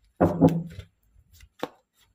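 Tarot deck being handled over a cloth-covered table: a loud thud about a quarter second in as the deck is knocked or set down, then a short sharp tap of cards a little past one and a half seconds, with faint card rustles between.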